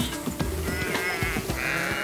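Sheep bleating, two quavering calls, one about half a second in and a louder one near the end, over background music.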